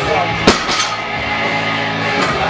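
Background music with a single sharp clank about half a second in: a heavily loaded barbell with iron plates being set down onto blocks after a deadlift rep.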